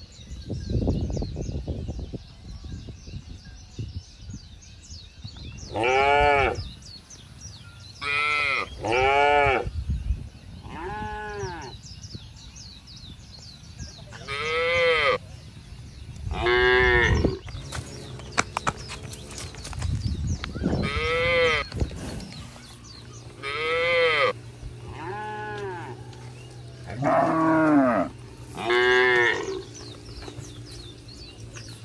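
Zebu cattle mooing: a series of about eleven short moos, each rising and then falling in pitch, spaced a second to a few seconds apart.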